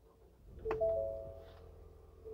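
2020 Ford Escape's 2.0-litre turbocharged four-cylinder EcoBoost engine starting with a click about half a second in and settling into a low, steady idle hum, while the dashboard's electronic chime sounds a few held, ringing notes over it.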